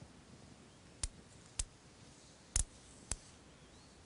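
Small neodymium-iron-boron (rare earth) disc magnets clicking as they jump together and snap into a cluster: four sharp clicks in two pairs, each pair about half a second apart.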